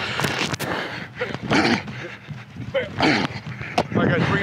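Several short wordless shouts from football players, each falling in pitch, mixed with a few sharp smacks.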